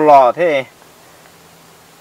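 A man speaks a few words, then a faint, steady low buzz holds for the rest of the moment with nothing else over it.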